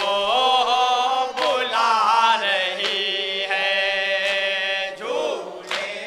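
A group of men chanting a nauha, a Muharram lament, together into a microphone. Their voices glide and hold long notes, and a sharp beat falls about every second and a half.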